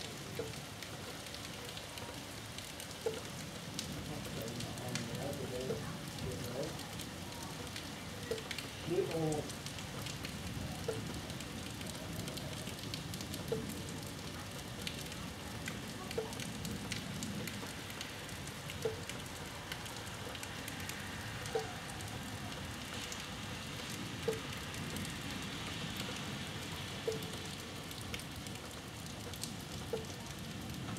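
Steady rain falling during a thunderstorm, with a short pitched tick repeating regularly about every two and a half to three seconds.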